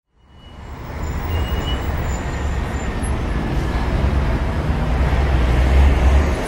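City street ambience: a steady traffic rumble with a haze of road noise, fading in over the first second.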